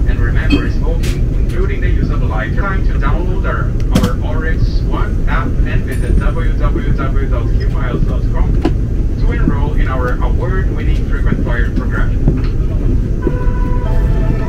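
Steady low rumble of an Airbus A380 cabin on the ground before take-off, the hum of its air and ventilation system, with indistinct voices talking in the background.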